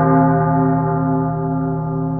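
A deep, sustained bell-like tone ringing on and slowly fading, with a slight wavering in it: a sound-effect sting in a horror audio story.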